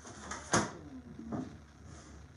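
Two sharp knocks of objects being handled or bumped, the first louder, about half a second in and again under a second later.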